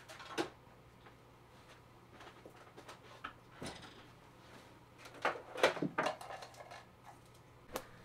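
Things being handled and moved about on a desk: scattered light knocks, clicks and rustles, with a cluster of louder clunks about five to six seconds in.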